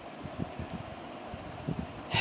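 Faint, steady background hiss of the recording, with a few soft low knocks.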